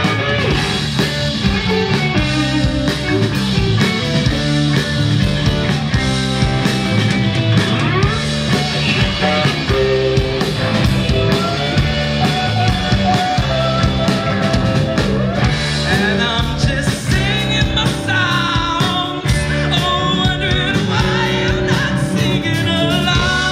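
A rock band playing live: electric guitars, electric bass and a drum kit, with singing. A wavering high melodic line comes in over the last few seconds.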